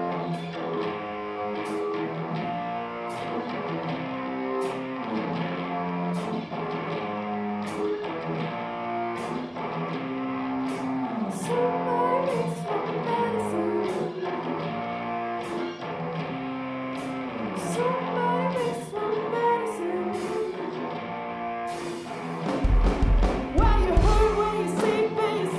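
Live rock band playing: a guitar riff over light, regular cymbal ticks, with a singer coming in about halfway. Near the end the full drum kit comes in and the music gets louder.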